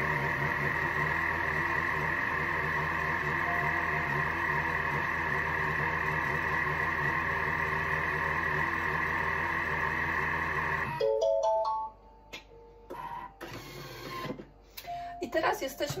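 Thermomix TM6 motor and blades running steadily, mixing a thick cream cheese filling. The sound stops abruptly about eleven seconds in as the timed 15-second mixing ends, followed by a short run of beeps from the machine.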